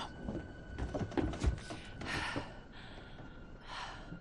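Tense, quiet film soundtrack: scattered soft knocks and creaks with a faint steady high tone under them, and two short, sharp breaths, one about halfway and one near the end.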